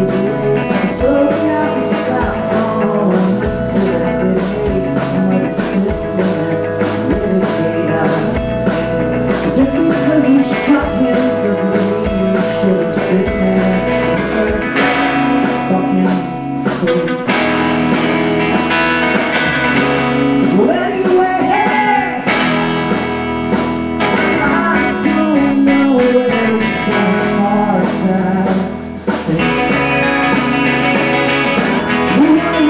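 Rock band playing live: electric guitar over bass and a steady drum beat. The sound fills out with sustained, brighter chords about halfway through.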